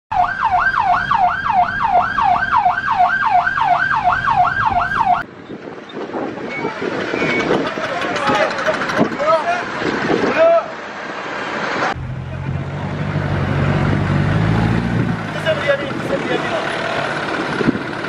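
An emergency vehicle siren on a fast yelp, sweeping up and down about two and a half times a second, for the first five seconds. It cuts off suddenly, and outdoor voices follow over a vehicle engine running.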